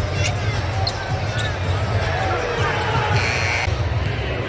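Basketball game heard courtside: a ball dribbled on the hardwood court and sneakers squeaking, over crowd chatter and low arena music. A brief shrill sound comes near the end.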